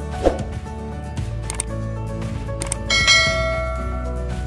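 Background music, with a sharp click just after the start and a bright bell-like ding about three seconds in that rings on and fades: the sound effect of a subscribe-button animation.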